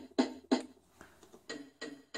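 Circuit-bent Kawasaki I-Sounds electronic drum pads triggered by a 4017 gate sequencer, playing a short drum hit over and over about three times a second. The middle hits are fainter, as the patch lead that selects the drum sound is moved.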